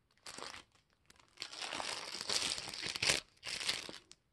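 Clear plastic packaging crinkling as it is handled, in three spells: a short rustle near the start, a long stretch of crinkling in the middle, and a short rustle near the end.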